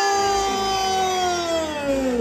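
A woman's amplified voice drawing out the last syllable of 'Thái Lan' as one long held call, the announcement of a pageant award winner. The call slides down in pitch near the end.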